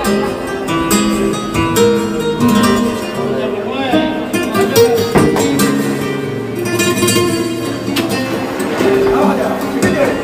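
Live flamenco music: acoustic flamenco guitar playing, with a voice singing at times and a few sharp percussive strikes, the loudest about halfway through.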